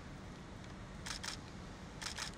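A quiet lull with a low steady hum, broken by two short, sharp clicks a fifth of a second apart a little over a second in.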